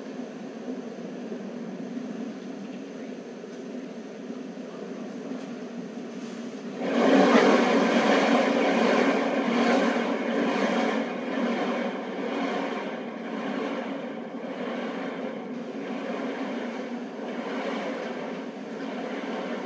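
Rushing rumble of the New Shepard booster's BE-3 engine burning on ascent, heard at a distance. About seven seconds in it turns suddenly louder, then wavers and slowly eases.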